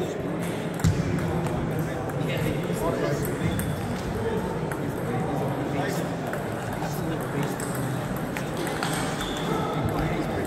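Table tennis rally: the celluloid ball clicks sharply off the bats and the table at an uneven pace, the strongest hit about a second in. Clicks from balls on other tables and a steady murmur of voices fill the sports hall around them.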